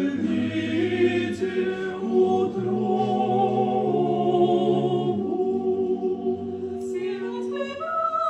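Small mixed church choir singing an Orthodox liturgical hymn a cappella in slow, sustained chords. The lowest voices drop out about five seconds in, leaving the upper voices holding the chord until a new phrase begins near the end.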